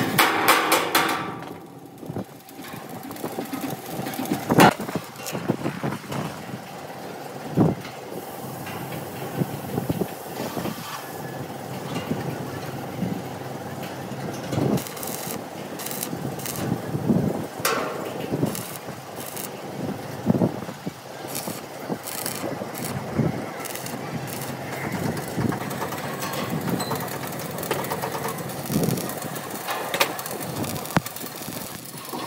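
Stick (arc) welding on steel plate: the electrode arc crackles and spits, with scattered sharp metallic knocks throughout.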